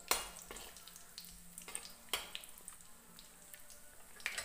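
Whole cumin and coriander seeds sizzling faintly and crackling in hot oil in a steel kadai as a tadka (tempering), while a steel spoon stirs them. A few sharp clicks stand out, one right at the start and one about two seconds in.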